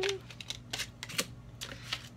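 Tarot cards shuffled in the hands: a few sharp, irregular card clicks and snaps as one card jumps out of the deck onto the table.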